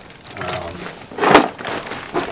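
A short rustling clatter of gear being handled and moved about, loudest about a second and a quarter in.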